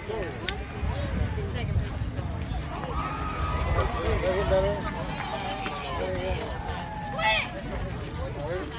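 Distant voices and calls from softball players and spectators, over a low steady rumble.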